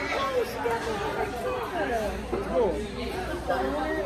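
Indistinct chatter of several voices talking over one another, with no clear words.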